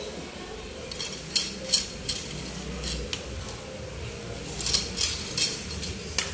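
Handling noise from a carbon fishing rod being turned and moved in the hands: soft rubbing with scattered light clicks and ticks, a few about a second and a half in and a small cluster near the end.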